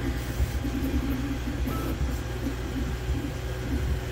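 Steady low hum with a hiss over it, unchanging throughout.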